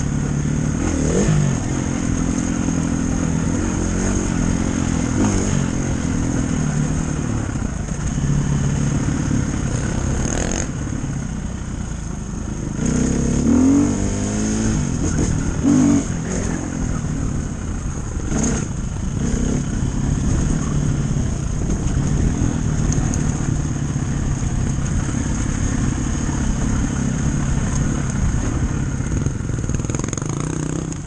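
Dirt bike engine running under load as it is ridden along a rough single-track trail, the revs rising and falling with the throttle and climbing sharply about halfway through. A couple of sharp knocks break in along the way.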